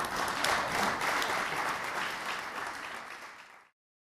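Audience applause after a live jazz number, dense hand-clapping that slowly fades and is then cut off abruptly near the end.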